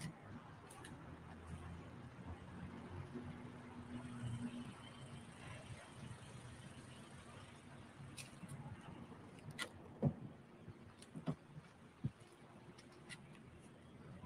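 Faint street ambience picked up by a phone: a low, even traffic hum, with a few short clicks and taps in the second half.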